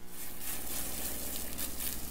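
Water from a garden hose spraying onto glass-fronted solar panels, a steady hissing spatter of water on the glass.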